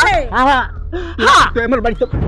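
A person's voice wailing without clear words, in several loud cries whose pitch rises and falls, with short breaks between them.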